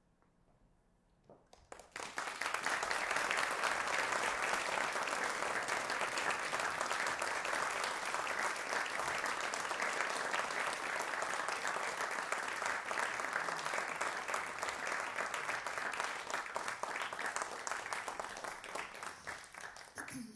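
Audience clapping: applause swells in about two seconds in, holds steady and dense, and thins out near the end.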